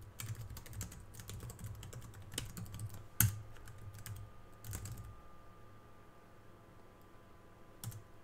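Computer keyboard typing in quick runs of keystrokes, with one sharper, louder keystroke about three seconds in. The typing stops after about five seconds, and one more keystroke comes near the end.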